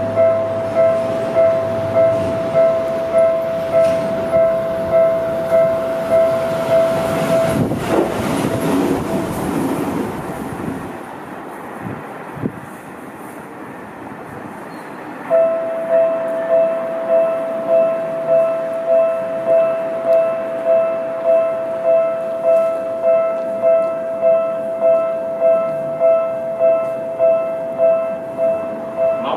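Electronic railway level-crossing warning bell ringing in steady, evenly spaced dings, about three every two seconds, while a Seibu 10000 series limited express passes. The bell stops about eight seconds in, under a brief rush of train noise. About halfway through, a level-crossing bell with a slightly different tone starts up and rings steadily on.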